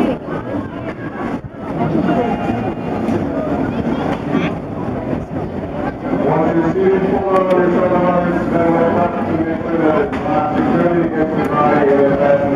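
Indistinct voices of people talking, no words clear, over a low steady hum.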